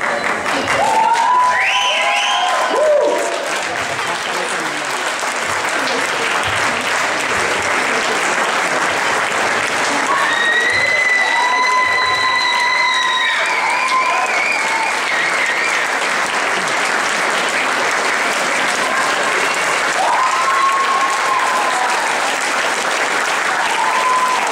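Sustained applause from the audience and the dancers on stage, a steady dense clatter of many hands. A few long, held cheers rise above it about a second in, around the middle and near the end.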